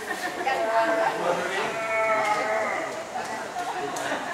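People's voices with drawn-out, wavering, high-pitched vocal sounds, several held for about a second.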